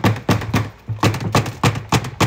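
A rapid, even series of hard knocks or taps, about four a second, as a knocked-off piece is worked back onto a plastic appliance close to the phone's microphone.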